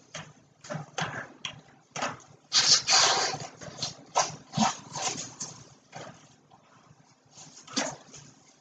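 A large latex weather balloon being blown up by mouth: short, sharp breaths and puffs, with one longer, louder breath about three seconds in, and short rubbing noises of the stretched latex against lips and hand.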